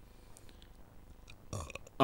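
A near-quiet pause with a few faint clicks, then a short throaty vocal sound from the male narrator about a second and a half in.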